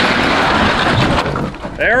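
Old wooden boathouse with a cedar shake roof breaking up and scraping over the ground as a winch cable drags it down. It makes a loud, continuous noise of splintering and scraping wood that eases off about a second and a half in.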